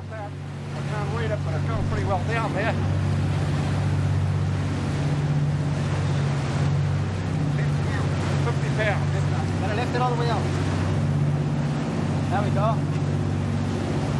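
A sportfishing boat's engines run with a steady drone while the boat is under way, with the rush of its wake and choppy water. Short indistinct voices come in a few times.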